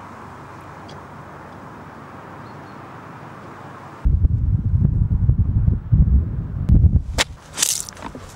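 Faint steady outdoor hiss, then about halfway through a sudden change to loud, gusty low rumble of wind buffeting the camera microphone, with two sharp noises near the end.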